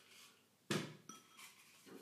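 A single sharp knock of kitchenware about two-thirds of a second in, followed by a brief faint ringing clink; otherwise quiet.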